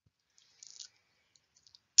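A short run of faint clicks, like a computer mouse being clicked, a little over half a second in, with a few fainter ticks later; otherwise near silence.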